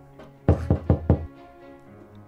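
Four quick, loud knocks in a row, over steady background music.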